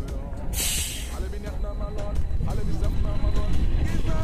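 City bus air brakes letting out one short, sharp hiss about half a second in, over low traffic rumble.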